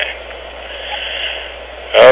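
Steady hiss and low hum of a narrow-band recorded conversation, likely a phone line, during a pause between speakers.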